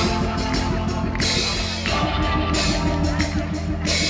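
Live rock band playing: electric guitar, bass and drum kit at full volume, with steady drum hits under sustained guitar chords.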